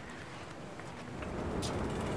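Steady outdoor background noise, with a low rumble building from about a second in.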